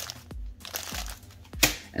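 Clear plastic bags of small Lego pieces rustling and crinkling as they are handled, with one sharper crinkle about one and a half seconds in, over quiet background music with a steady beat about twice a second.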